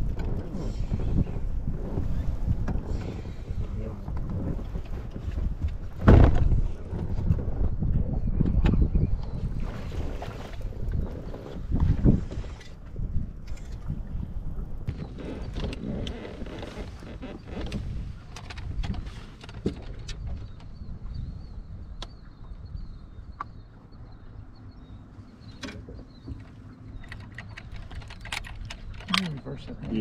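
Knocks and thumps of movement and handling on a bass boat's deck over a low, gusty rumble of wind on the microphone; the loudest thump comes about six seconds in.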